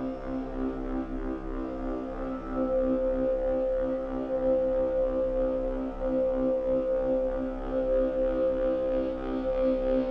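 Eurorack modular synthesizer playing a steady ambient drone: a held chord of several tones that grows louder about a third of the way in.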